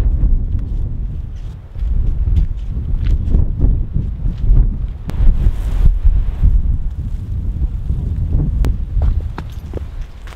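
Wind buffeting the microphone with a loud, steady low rumble, with footsteps on a frozen, icy trail.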